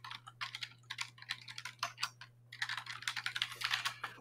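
Quiet rapid typing on a computer keyboard: runs of quick key clicks with a short pause a little past halfway, over a low steady electrical hum.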